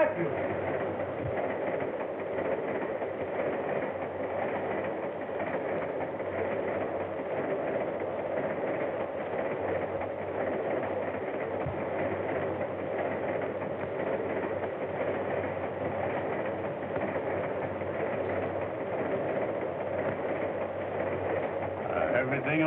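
Steady running noise of a moving train as heard inside a railroad car, on an early film soundtrack.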